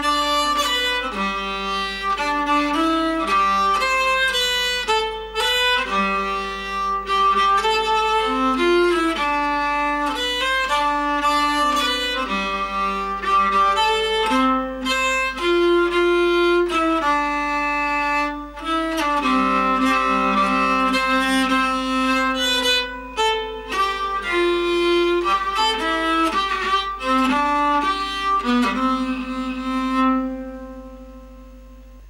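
Nyckelharpa played with a bow: a lively folk melody moving note to note over a steady held drone, the tune ending near the end.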